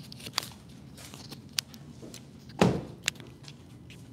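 Footsteps and small clicks as a person climbs out of a car and walks around it on a hard showroom floor, with one heavier thump about two and a half seconds in.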